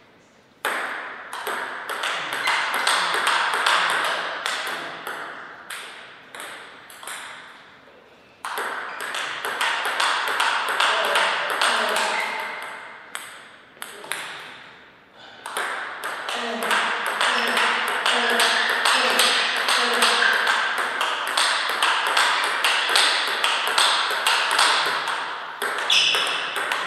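Table tennis ball being hit back and forth in rallies: rapid sharp clicks of the ball off the paddles and the table, in three runs with brief pauses about a third and just over halfway through.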